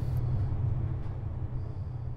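Steady low rumble of a moving train, slowly fading away.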